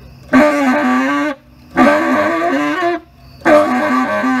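Solo tenor saxophone in free improvisation: three short phrases of about a second each, separated by brief pauses for breath, the pitch wavering.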